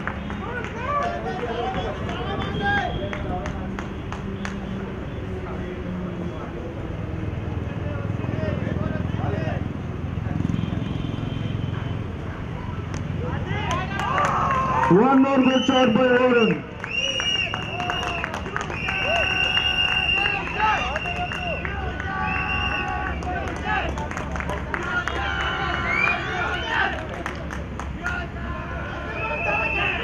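Cricket players' voices talking and calling across the field, none of it clear speech, with one loud, drawn-out shout about halfway through.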